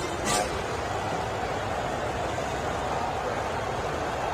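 Steady murmur of a stadium crowd, an even wash of noise with no standout shouts or chants.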